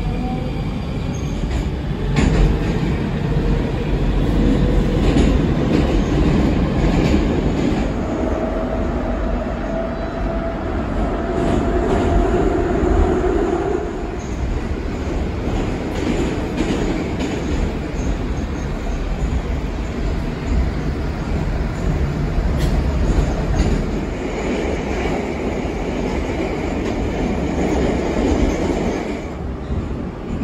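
Moscow metro 81-740/741 Rusich articulated train heard from inside the car while running, with a loud, steady rumble of wheels on rails. A thin whining tone rises over the rumble about eight seconds in and lasts several seconds, and a higher whine comes in near the end.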